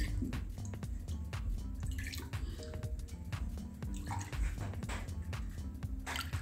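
Thin liquid ladled into a stainless-steel mesh strainer, pouring and dripping through it in many small splashes, over soft background music.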